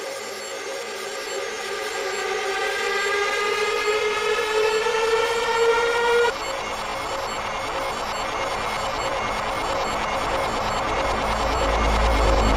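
Psytrance breakdown played in reverse, with no drums: a synth tone with many overtones glides slowly upward and cuts off abruptly about six seconds in. A rushing noise wash follows, with a low bass tone swelling near the end.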